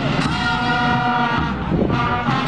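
Brass band playing held chords on trumpets and other brass, with drums underneath and a cymbal crash about a quarter second in.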